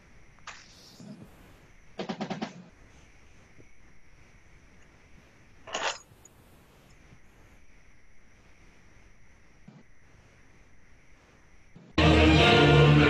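Faint room noise broken by a few sharp clicks, with one short rattle of rapid clicks about two seconds in, from a computer being operated.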